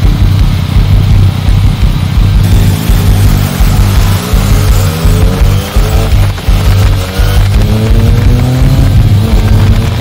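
Yamaha Tracer 900 GT's inline-three engine, fitted with an Akrapovic exhaust, accelerating: its pitch climbs and drops back with each upshift, about four times in the second half, with rock music playing over it.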